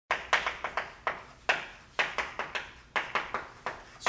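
Chalk tapping on a chalkboard as words are written: an irregular run of short, sharp taps, about four a second.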